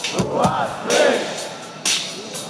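A live metal band's shouted vocal over the PA, with two long shouted words, between sharp percussive hits at the start and near the end. Crowd noise sits underneath, heard from within the audience.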